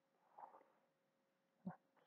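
Near silence: room tone with a faint steady hum, a faint soft sound about half a second in and a brief faint click near the end.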